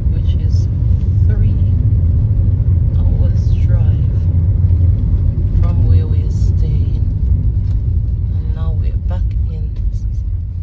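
A car driving, heard from inside the cabin: a steady low rumble of engine and tyre noise on the road, easing slightly near the end.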